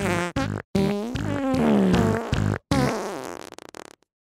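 Comedy music track built from fart sounds: a few short pitched blasts, then one long fart note that bends up and then slides down in pitch, trailing off near the end.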